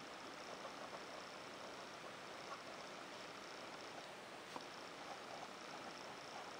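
Faint, steady scratching of a large Swan Mabie Todd No. 6 fountain-pen nib writing on a paper pad, with a couple of soft ticks about two and a half and four and a half seconds in.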